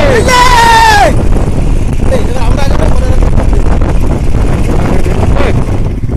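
Wind rushing over the microphone of a moving motorcycle, with the engine's low rumble underneath. Near the start a person gives a loud, high shout that falls in pitch over about a second.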